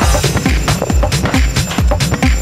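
Electronic techno track from a DJ mix. A steady kick-drum beat with crisp high percussion comes in at the start, over sustained synth tones.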